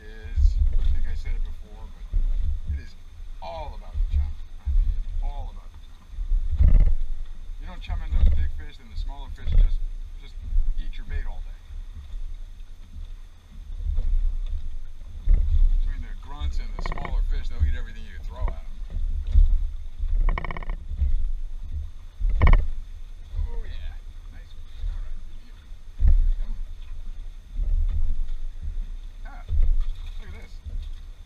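Gusty wind buffeting the microphone: a loud low rumble that swells and drops every second or two, with a couple of sharp knocks.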